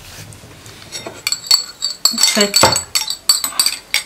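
Metal spoon clinking and scraping against the sides of a small bowl while stirring oils and shea butter together: a quick, irregular run of light clinks starting about a second in.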